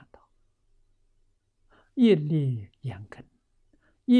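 Speech only: an elderly man talking in Chinese, falling silent for nearly two seconds before he goes on.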